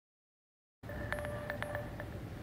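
Dead silence for nearly a second at an edit cut, then outdoor background noise with a faint steady tone and a few light, chime-like clicks.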